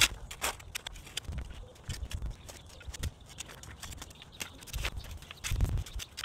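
A narrow steel trenching shovel digging into dry, crumbly garden soil: a run of short scrapes and crunches as the blade cuts and lifts the dirt, with a few low thuds near the end.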